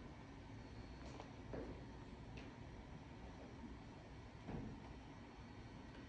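Near silence: quiet room tone with a few faint soft clicks.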